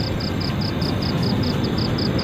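A steady rushing noise, with an insect chirping in an even pulse about four times a second.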